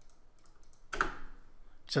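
Faint clicks of a computer mouse and keyboard, with a short, louder breathy burst about a second in. A voice starts just at the end.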